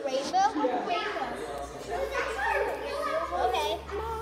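Children's voices, several girls talking and calling out over one another as they play.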